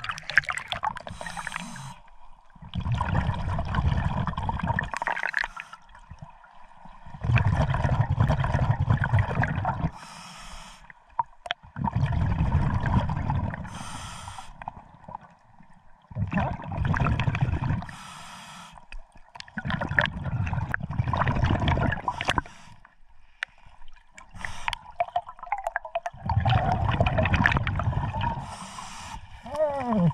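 Scuba diver breathing underwater through a regulator, heard through the camera's underwater housing: a short hiss on each inhale, then a longer rumbling rush of exhaust bubbles on each exhale. There are about six breaths, one every four to five seconds.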